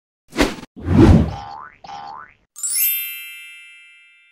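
Cartoon-style logo sound effects: a sharp whack, a heavier thud, two quick rising boings, then a bright bell-like chime that rings out and fades.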